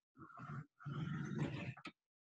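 A marker drawn across paper in two long strokes, a squeaky scratching, as lines are ruled around a written formula.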